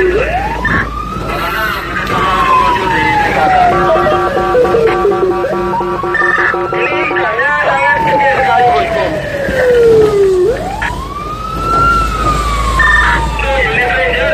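Fire engine's siren wailing, heard from inside the cab: the pitch climbs quickly and then falls slowly over about eight seconds, and starts climbing again about ten seconds in. A steady horn blast sounds over it from about four to seven seconds in.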